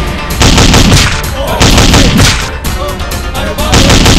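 Rifle fired in several rapid automatic bursts, each a quick run of sharp cracks, over film background music.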